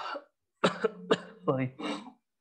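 A man coughing, a few short coughs in quick succession in the first second or so.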